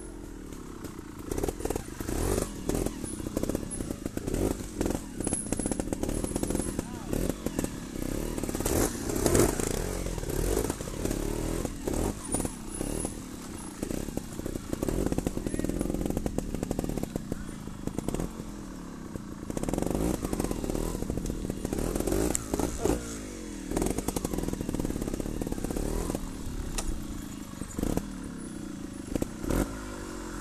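Trials motorcycle engine running at low speed, its pitch rising and falling again and again with short throttle blips, with occasional knocks as the bike works over rocks.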